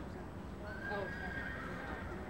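A horse whinnying: one long call that starts about half a second in and lasts just over a second, holding a fairly even pitch.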